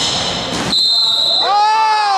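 Basketball game on a hardwood gym court: the ball and players' shoes on the floor with short high squeaks. Then a single high, steady squeal held for most of a second, and near the end a voice calling out with a long falling pitch.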